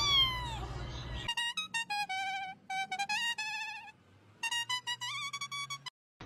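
A kitten gives one short meow that falls in pitch right at the start. From about a second in, a short electronic melody of clear, slightly wavering notes plays in three phrases and stops just before the end.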